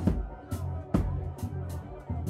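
Live band playing a reggae-funk groove: electric bass holding deep low notes under sharp drum hits about twice a second.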